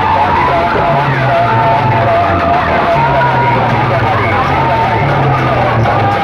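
Loud music blasting from a stacked rig of horn loudspeakers, with a deep bass line pulsing in blocks under a wavering melody.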